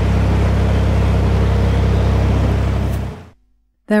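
Narrowboat diesel engine running steadily in gear, with the propeller churning water at the stern; the sound stops about three seconds in.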